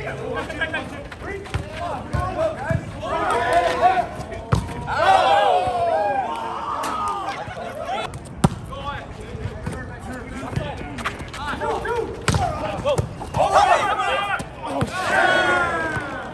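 Street volleyball rally: sharp smacks of hands hitting the ball every second or two, the sharpest about eight seconds in, under players' shouted calls and yells.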